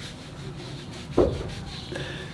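A hand rubbing a horse's forehead, a soft scratching of hair, with one short thump a little after a second in.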